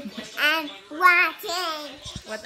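A child's voice singing in three short, wavering sing-song phrases without clear words, the loudest about a second in.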